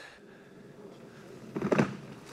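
Kärcher push floor sweeper rolling over a pile of shop debris on concrete, its rotating brushes sweeping grit into the hopper. There is a short, louder rattle of debris about a second and a half in.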